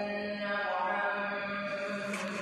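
A man's voice reciting in a melodic chant, holding long steady notes, as in Arabic recitation read aloud from a book.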